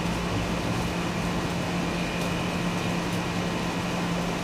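A steady mechanical hum: a constant low tone under an even hiss, unchanging throughout.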